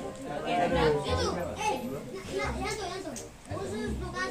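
Children and adults talking over one another, with no clear words.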